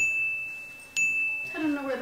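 A bell-like chime dings twice, about a second apart, each a single clear high note that rings on and fades.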